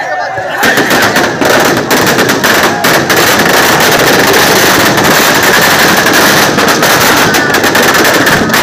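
Firecrackers packed in a burning Dussehra effigy going off in a dense, rapid crackle of bangs, starting about half a second in.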